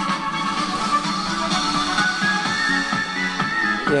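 Music playing through a small homemade 12-volt tube amplifier, built with one 5672 and two 5676 miniature tubes and delivering less than a watt, driving an old loudspeaker.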